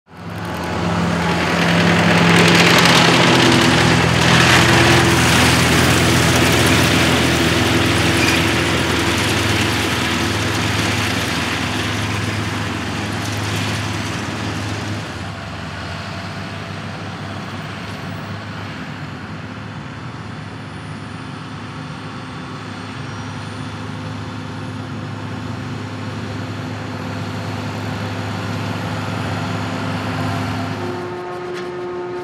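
John Deere tractor's diesel engine running steadily while pulling a McHale round baler through a field of cut grass. It is louder for the first half, then eases to a lower, steadier level.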